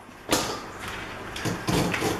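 Kitchen knives slicing through onions and knocking on plastic cutting boards: a few irregular chopping strokes, the sharpest about a third of a second in.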